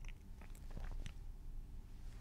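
Faint room tone with a few small, soft clicks, like mouth and lip noises from a narrator at the microphone between lines.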